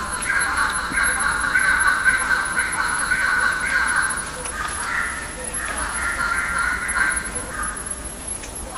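A run of repeated animal calls, about two a second, over a steadier call in the same range; the pattern changes about halfway through.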